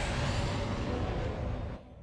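Steady engine noise of an aircraft in flight from the TV episode's sound track, a deep rumble under a rushing hiss, cut off sharply near the end.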